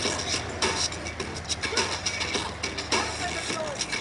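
Road traffic passing with a steady low rumble, broken by many irregular sharp clicks and a few short bursts of voices.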